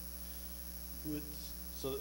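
Steady low electrical mains hum, with a short voiced sound about a second in and a spoken word starting near the end.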